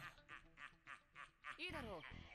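Faint voice-acted character dialogue from an anime episode playing quietly, with one voice falling steeply in pitch near the end.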